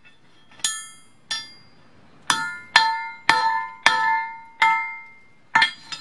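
Hand hammer striking hot O1 drill rod on a makeshift steel anvil: about nine separate blows, each leaving a short metallic ring. Two blows fall in the first second and a half, then they come faster, about two a second, ending with a quick double strike near the end.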